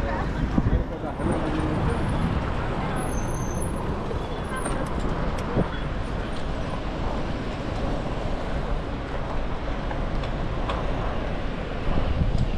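Steady city traffic noise from cars passing on the road beside a bike lane, with low wind rumble on the microphone of a camera riding on a moving bicycle.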